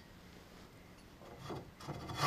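Mostly quiet background, with a faint knock and scrape about one and a half seconds in as a hand takes hold of a steel log stopper on a sawmill bed.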